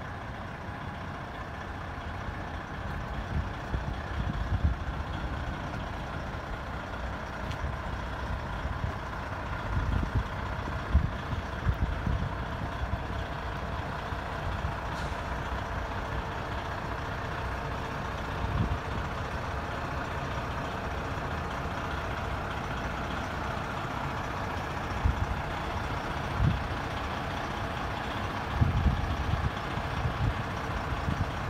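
Fire engine's engine running with a steady rumble and faint hum as the truck idles and moves slowly, with a few louder low bumps.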